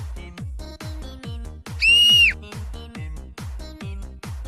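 Background electronic music with a steady beat. About two seconds in, a loud high whistle tone is held for about half a second and drops away at its end.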